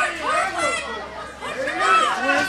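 Raised human voices calling out and talking over one another in a large, echoing hall.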